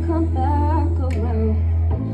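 A woman singing live with a small guitar band: her voice carries the melody over strummed guitars and a held low bass note, which shifts to a new note near the end.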